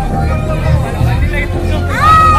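Loud music with heavy bass, over the chatter and shouts of a crowd.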